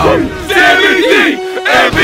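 Two men yelling and cheering loudly in excitement, their shouts overlapping.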